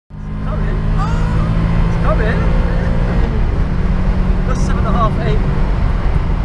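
VW Golf II GTI heard from inside the cabin while driving: a steady engine drone with road rumble, turning rougher and noisier about halfway through.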